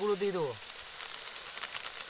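Spice masala sizzling in hot oil with a little water in an aluminium karai as it cooks down, with crackles that thicken near the end. A short burst of voice comes at the start.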